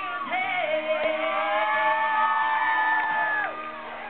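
Live country duo: a woman's voice holds one long high sung note for about three seconds over a strummed acoustic guitar, and the note ends shortly before the crowd noise and talk resume.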